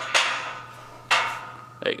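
Two sharp knocks about a second apart, each with a short scraping decay: handling noise from the recording phone being moved and gripped.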